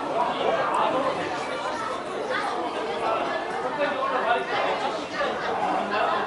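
Steady background chatter of many people talking at once in a busy restaurant dining room, with no single voice standing out.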